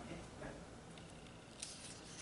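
Near-quiet room with a short, soft paper rustle about one and a half seconds in, as a hand takes hold of a paperback book's page to turn it.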